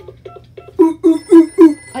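A cartoon telephone ringing from the TV speaker, with a child laughing in four loud, evenly spaced bursts over it.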